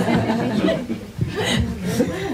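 People chuckling and laughing, mixed with a little talk.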